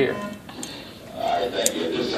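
A man's voice finishing a word, then faint murmured voices and a couple of light clicks from handling.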